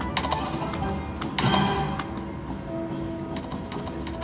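Video slot machine playing its game music and sound effects while the reels spin, with a run of sharp clicks and a louder chiming flourish about a second and a half in.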